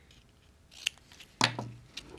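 Small scissors snipping through greeting-card stock: two sharp snips about a second in and half a second later, the second louder.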